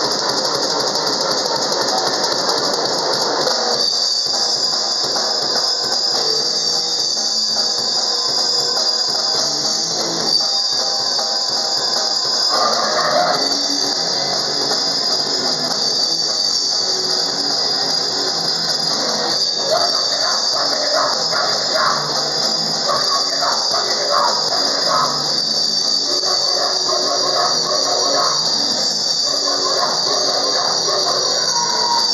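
Hardcore punk band playing live and loud: electric guitar, bass and drum kit, with a steady high-pitched squeal sitting over the whole mix.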